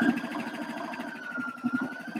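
Electric domestic sewing machine stitching a seam: a steady motor whine over fast, even needle strokes.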